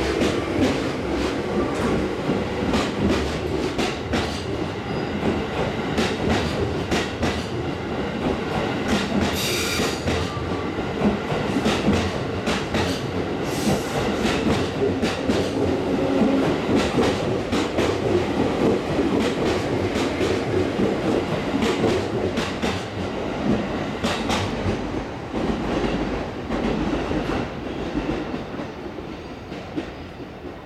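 JR 211 series electric train departing and passing close by, its wheels knocking in a steady run of clickety-clack over the rail joints as it gathers speed. The sound fades over the last few seconds as the final car goes by.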